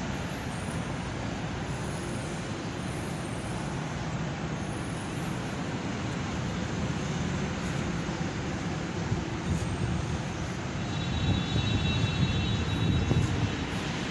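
Steady rumble of road traffic, growing louder about eleven seconds in, with a brief thin high tone over it for a couple of seconds near the end.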